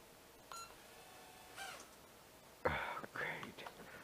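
A man's brief wordless vocal sound, the loudest thing here, about two-thirds of the way in, after two short faint beeping tones.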